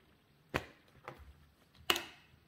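Three sharp knocks of a kitchen knife and a blanched cabbage leaf being set down on a tiled countertop; the loudest comes just before the end.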